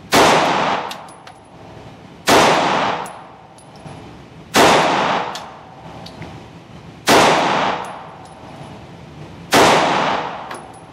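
Springfield Armory Hellcat pistol fired five times, slow and evenly paced, about one shot every two and a half seconds. Each shot echoes long in a concrete indoor range, with faint metallic clinks between the shots.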